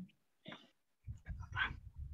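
A dog barking faintly in the background, a few short barks picked up through a video-call participant's microphone over low background rumble.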